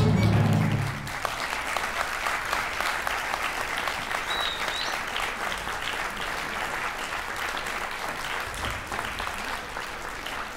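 The orchestra's final chord cuts off about a second in, and audience applause takes over, steady and slowly fading, with a brief high whistle about four seconds in.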